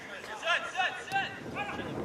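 Men's voices calling out in short bursts across a football pitch, with one sharp knock about a second in.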